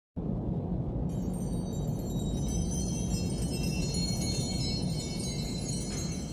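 Intro music: a steady low drone with high, shimmering chime-like tones that come in about a second in.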